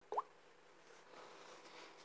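A single short plop that rises quickly in pitch just after the start, then faint, near-quiet room tone.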